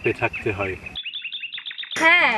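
A man speaking, then, about a second in, a bird chirping in a quick run of short, falling chirps, about eight a second.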